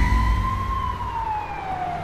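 A siren-like wail that crests just under a second in and then slides slowly down in pitch, over a low rumble that fades away. It is a sound effect on an animated end card.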